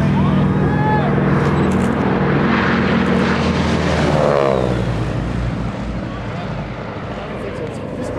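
A North American SNJ-4's Pratt & Whitney R-1340 nine-cylinder radial engine and propeller run loud and steady as the plane makes a low pass. The pitch drops about four seconds in as it goes by, and the sound then fades as it climbs away.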